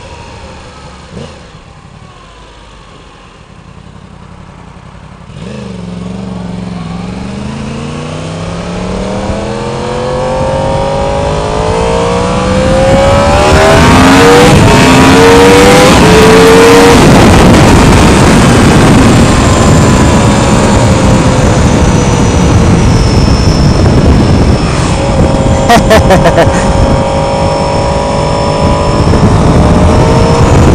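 Yamaha sport bike's inline-four engine pulling away from a stop: a low, quieter running for a few seconds, then rising in pitch hard through the gears with short breaks at each upshift. It then runs loud and steady at road speed under heavy wind noise on the microphone.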